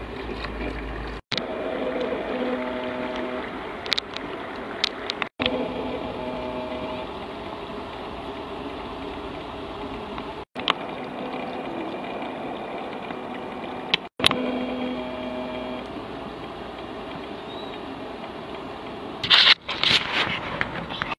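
Outdoor riverside ambience with a steady, distant engine hum, broken by several brief dead-silent dropouts and a few short clicks; a louder noisy burst comes near the end.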